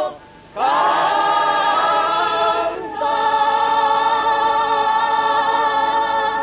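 A mixed group of villagers singing a Piedmontese folk song in chorus, with piano accordions accompanying. After a short breath near the start they hold one note, then a long steady final chord that closes the song.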